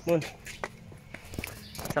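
Footsteps climbing a stairway, a few uneven steps heard as separate sharp taps after a brief spoken word.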